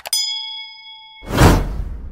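A mouse-click sound effect and a bright bell ding that rings for about a second, cued to clicking a notification-bell icon. This is followed by a loud rushing sound effect.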